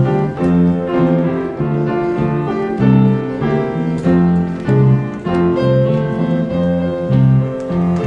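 Grand piano playing a steady, rhythmic instrumental piece, accompanied by an electric guitar.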